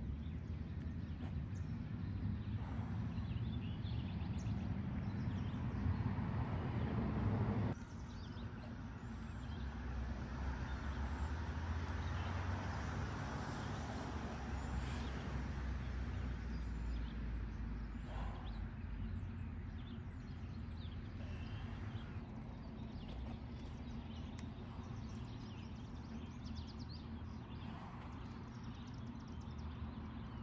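Outdoor ambience: a steady low rumble with faint scattered bird chirps. The rumble drops abruptly about eight seconds in.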